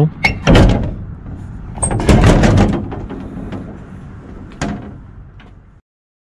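A lorry door opened and slammed shut, with two loud bangs about half a second and two seconds in, then a few lighter clicks; the sound cuts off suddenly just before the end.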